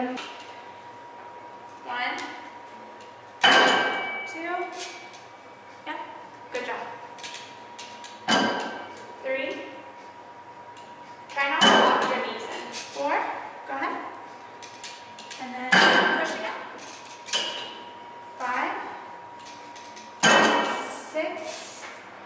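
Weight stack of a Hoist selectorized leg press clanking as it is worked through reps: five sharp metal clanks, about one every four seconds, each ringing briefly.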